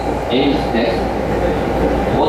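Rinkai Line electric train running along the track, heard from inside the carriage as a steady loud rumble of wheels on rail, with a voice talking over it about half a second in.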